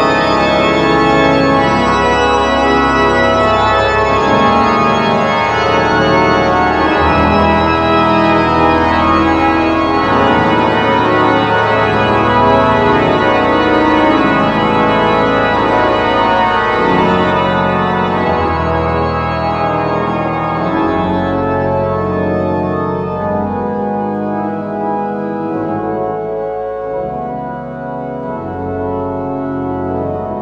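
The Great Organ of the Methuen Memorial Music Hall, a large pipe organ, playing sustained full chords over low pedal notes. About halfway through the sound loses its brightness and grows somewhat softer toward the end.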